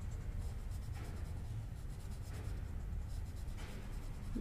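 Colouring strokes on a workbook page clipped to a clipboard: faint, quick back-and-forth scratching as the top rectangle is filled in green.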